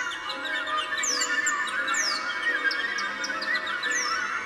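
Orchestral music with no singing: rapid, twittering high figures and repeated quick downward swoops in the top register over held lower notes.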